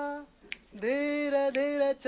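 Background music: a voice sings long held notes, sliding up into each one. One note ends just after the start, and after a short gap another begins about a second in. A sharp click falls about once a second, keeping time.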